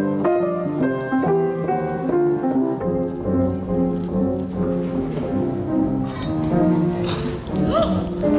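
Piano music: slow sustained notes and chords, with a low bass line joining about three seconds in. A burst of clattering noise comes near the end.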